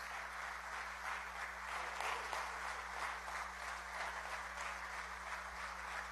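A large crowd of assembly members and gallery spectators applauding steadily, a dense patter of many hands clapping at once.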